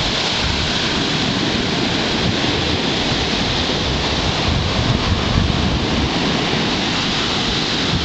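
Heavy high-tide surf breaking and washing up a sandy beach in a steady rush, with wind rumbling on the microphone.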